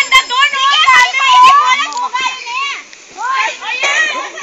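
Several young people's high-pitched voices shouting and squealing over one another during an outdoor game, with a short lull about three seconds in.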